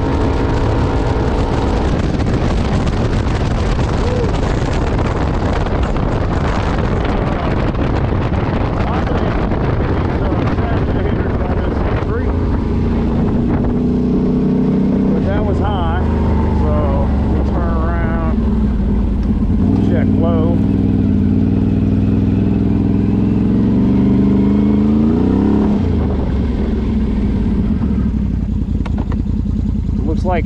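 Can-Am Outlander 850 XMR's Rotax V-twin running flat out in high range on its stock CVT clutching at about 65 mph, with wind rushing over the microphone. Partway through it eases off and the ATV slows, the engine dropping to lower revs with one brief rise and fall near the end as it comes to a stop.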